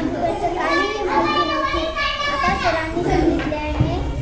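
A young girl's voice speaking.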